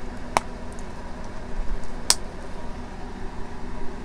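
Two short, sharp clicks about a second and a half apart over a steady background hiss, from handling a small coated-canvas card holder with a metal snap closure.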